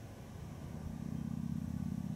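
A motor vehicle's engine hum with a fine pulsing texture, swelling from about half a second in and fading away near the end.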